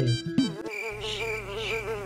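A housefly buzzing, a steady drone that wavers slightly in pitch, starting about half a second in.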